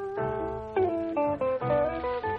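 Guitar trio playing an instrumental arrangement, the lead guitar picking a melody in quick single notes over a steady accompaniment.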